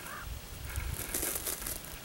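Faint crackling and rustling of needle-covered ground litter as a hand presses a crystal into it.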